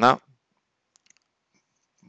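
A man's voice finishing a word, then a near-silent pause with a few faint clicks about a second in.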